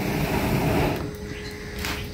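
A person blowing onto glowing charcoal to fan the coals: a breathy rush of air for about the first second, then quieter, with one short rush near the end.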